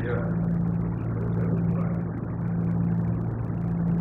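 A steady low hum under a soft, even wash of room noise.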